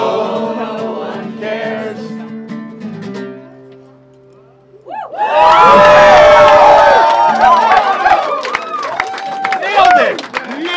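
The final strummed acoustic guitar chord of a song, with voices holding the last sung note, rings and fades away over about four seconds. Then a crowd cheers and whoops loudly from about five seconds in.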